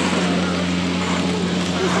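Chairlift machinery at the loading station running with a steady low hum, under an even rushing hiss.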